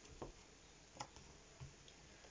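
Tarot cards being handled, giving three faint, light clicks spread over a couple of seconds against quiet room tone.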